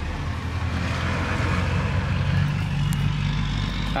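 A vehicle engine running: a steady low hum with a rushing noise over it.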